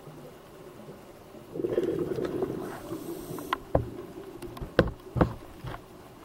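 Scuba diver's exhaled breath bubbling out of the regulator, heard underwater as a rushing, rumbling burst about a second and a half in that lasts about two seconds, followed by several short sharp clicks.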